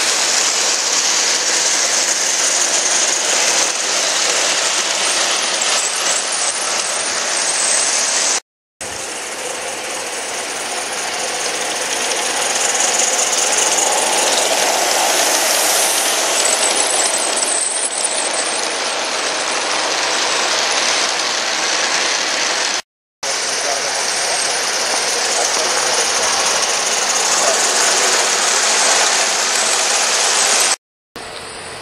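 Large-scale live-steam model freight train rolling past close by: a steady clatter of many small wheels on the garden-railway track. The sound cuts off abruptly twice, about a third of the way in and again about three-quarters in.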